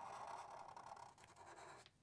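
Faint scratch of a Sharpie felt-tip marker drawing a line on paper, fading out after about a second.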